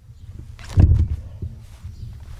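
A steady low rumble with one soft thump about a second in: handling noise as the camera is carried between the tubs.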